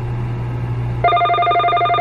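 A telephone ringing with a fast, trilling electronic ring of several steady tones, starting about a second in, over a steady low hum.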